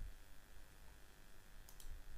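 Quiet room tone with a low hum, and two faint computer-mouse clicks near the end.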